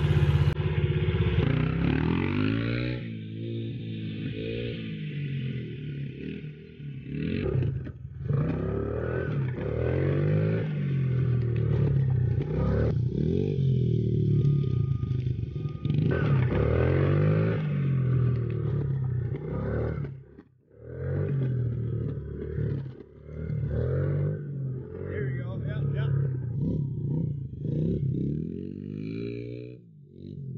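Small Honda dirt bike engine being ridden hard, revving up and falling back over and over, its pitch rising and dropping every second or two. The engine note drops away sharply for a moment about twenty seconds in, then picks up again.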